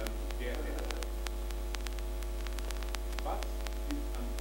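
Steady low electrical mains hum in the recording, with faint scattered clicks on top and a faint murmur of voices twice.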